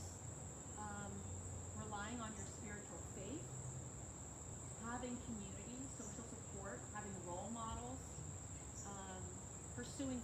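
Steady, unbroken high-pitched chirring of insects in summer greenery, with a faint voice talking quietly underneath.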